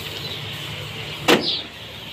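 Many day-old broiler chicks cheeping in plastic transport crates. Just past a second in comes one sharp plastic clatter as a crate is set down.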